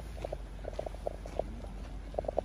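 An animal calling in short, low, repeated notes, several a second in irregular runs, over faint outdoor background noise.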